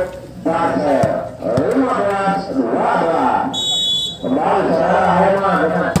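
A man's voice talking throughout, with a short steady referee's whistle blast about three and a half seconds in, signalling the serve. Two sharp knocks come shortly after the start.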